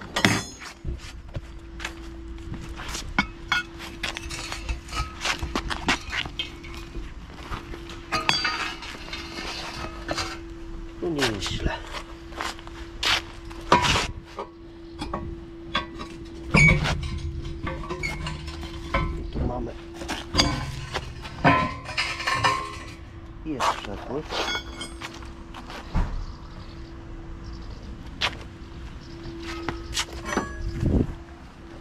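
Steel manhole hook clinking and knocking against metal, including a cast-iron manhole cover, in scattered sharp strikes over a steady hum.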